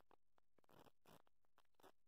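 Near silence: room tone with a few very faint soft ticks.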